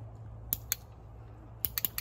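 Sharp clicks from a handheld training clicker marking the fox for being in the shift box: two clicks about a fifth of a second apart, then a quicker run of four near the end. A steady low hum runs underneath.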